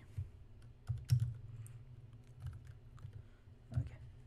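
Typing on a computer keyboard: a few separate keystrokes, irregularly spaced, as code is entered.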